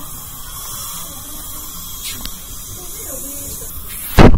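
Steady hiss and hum of equipment in a dental treatment room, with faint voices under it.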